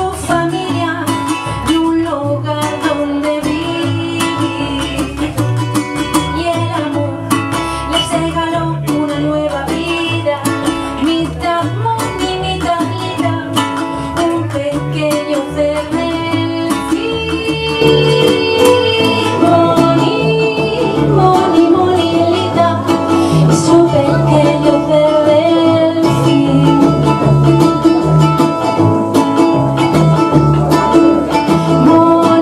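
Live acoustic duet of ukulele and upright double bass, the bass walking underneath the ukulele; the music grows louder a little past halfway.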